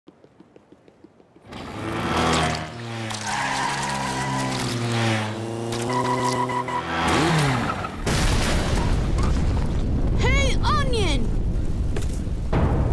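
Cartoon soundtrack: a stretch of music with held tones that step in pitch, ending in a falling glide, then a loud, sustained explosion-and-fire rumble from about eight seconds in, with a short swooping vocal sound over it.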